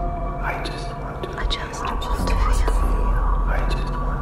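Vocal ambient music: many layered whispered voices over a sustained drone of held tones and a low hum, with sliding tones rising and falling through it.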